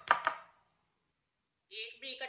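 A brief clatter as chopped cauliflower is tipped out of a plastic bowl into a serving bowl, the bowls knocking together, in the first half second.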